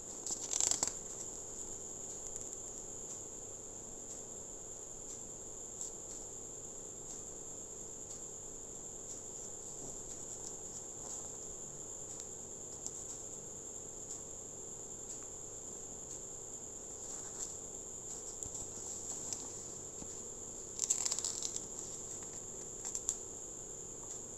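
Paper pages of a CD lyric booklet being turned and handled, rustling about a second in and again near the end. Under it runs a steady high-pitched background whine.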